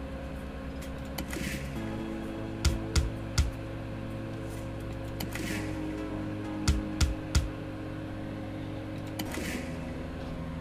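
Online video slot game audio: a steady electronic music bed with a short whoosh as each spin starts, then three quick clunks as the three reels stop one after another. This happens twice.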